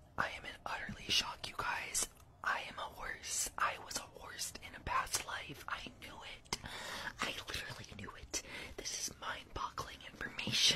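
Whispering close to a fluffy-covered microphone, in the manner of an ASMR clip, broken up by frequent short clicks.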